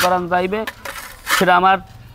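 A person speaking in two short bursts, with a sharp metallic click at the very start.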